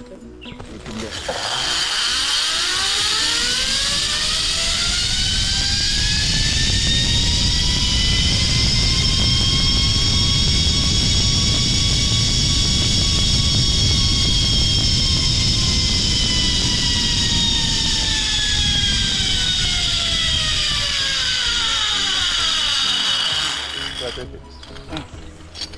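Zipline trolley pulleys running along the steel cable: a loud whine that rises in pitch as the rider picks up speed, levels off, then falls as the trolley slows and stops near the end, over a low rumble.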